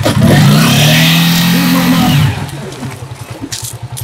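A vehicle engine accelerating close by, loud and rising slightly in pitch for about two seconds, then dropping away, with a steady low engine pulse left in the background.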